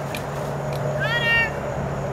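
A dog gives one short, high-pitched whine about a second in, lasting about half a second and rising at its start.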